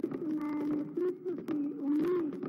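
Firecrackers going off in a string of sharp pops and cracks, over a held low-pitched tone that wavers up and down. The noise has halted a speech from the podium.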